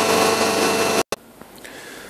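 Injection moulding machine running with a steady hum and high hiss. About halfway through, the sound cuts off abruptly to quiet room tone with faint rustling.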